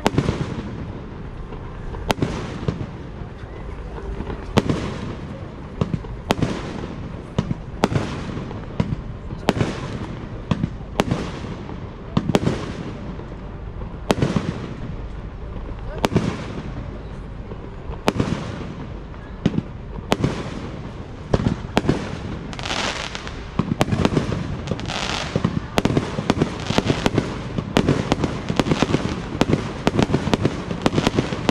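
Aerial firework shells bursting in a display, sharp booms every second or two that come faster in the last few seconds, with a spell of crackling about three-quarters of the way through.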